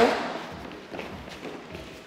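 Faint thuds and shuffles of bodies and bare feet moving on foam grappling mats, a few soft knocks after a short burst at the start.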